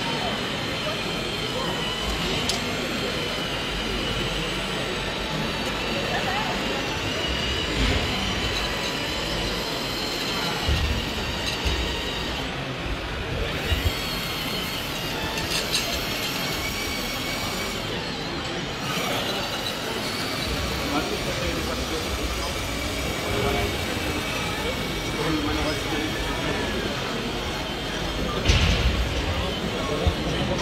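Radio-controlled scale model Liebherr 754 crawler dozer driving and pushing soil: a steady mechanical running noise with a thin, wavering high whine and occasional knocks from the tracks and blade, louder near the end.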